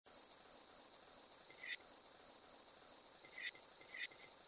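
Faint insects trilling in one steady, unbroken high-pitched tone, with a fainter, lower short chirp twice.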